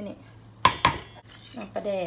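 Two sharp metallic clinks about a fifth of a second apart, each with a brief ring: stainless steel kitchenware knocking against a stainless steel mixing bowl.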